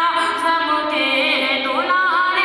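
A high-pitched voice singing a slow, drawn-out melody, holding long notes and sliding between them with curling ornaments.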